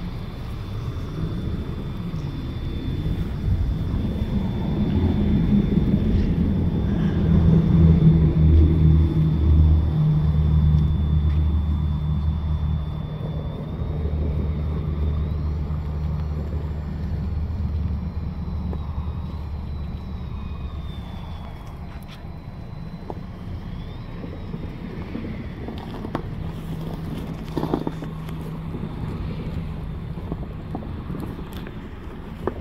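A motor vehicle's engine running with a low steady rumble that swells to its loudest about eight to ten seconds in, then fades away.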